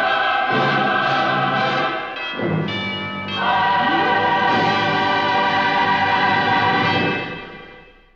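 Closing orchestral music with a choir singing, building to a final held chord that fades out near the end.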